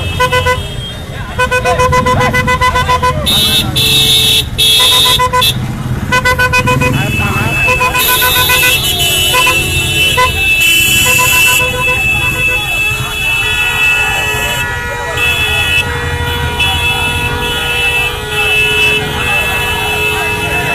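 Vehicle horns honking over a shouting crowd: a string of short, evenly repeated honks in the first several seconds, then longer held horn tones from a little past the middle.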